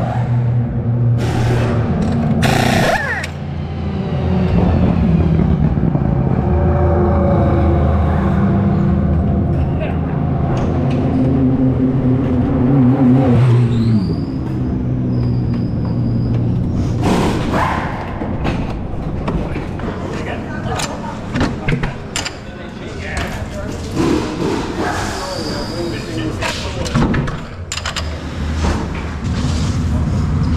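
The Oreca LMP2 car's Gibson V8 idling with a low, steady drone, its pitch sliding down as it is switched off about 14 seconds in. After that come scattered knocks and clatter of the car and equipment being handled.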